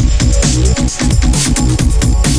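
Electronic drum and bass music: a fast, busy drum beat over a deep, heavy bass line.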